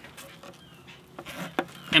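Nail being levered partway out of a wooden deck board with the side nail puller of an all-titanium Boss hammer: a few faint clicks and a short scrape as the nail draws through the wood.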